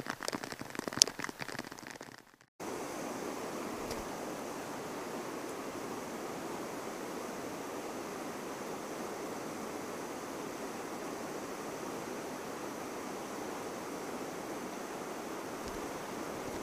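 Rain pattering with a sharp click about a second in, then, after a brief dropout, the steady rush of river water pouring over a low dam.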